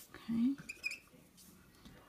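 Brush-tip colouring pen briefly squeaking on cardstock as it is stroked across the paper, a few thin high squeaks about a second in.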